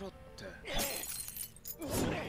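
Anime episode soundtrack of a fight: a character's dialogue over background music, with a sudden shattering crash about three quarters of a second in and a few sharp knocks near the end.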